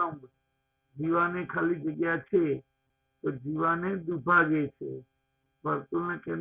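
A man's voice speaking in drawn-out phrases, with two brief silent gaps between them.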